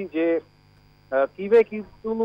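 A man speaking in Bengali, with a steady low electrical hum underneath. The hum is heard alone in a pause of under a second near the middle.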